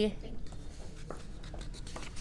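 Quiet room tone with a steady low hum and a few faint taps, about a second apart: footsteps of wooden-soled platform sandals on a concrete floor.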